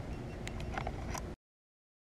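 Steady outdoor background noise of wind and water around a kayak, with a few faint clicks. It cuts off suddenly about two-thirds of the way in, leaving complete silence.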